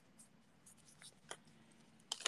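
Near silence, with a couple of faint crinkles of origami paper being folded by hand about a second in.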